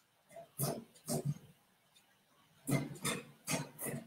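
A series of short, breathy sniffs, about seven, several coming in quick pairs.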